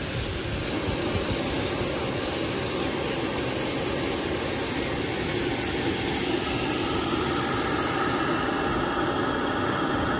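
Fish-pond aeration machinery running: a steady rushing noise of churned water and motors, with a faint machine hum growing clearer over the last few seconds.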